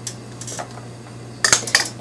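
Handling noise from a bundle of dry twigs: light clicks and rustles, then a quick cluster of sharp clicks about a second and a half in.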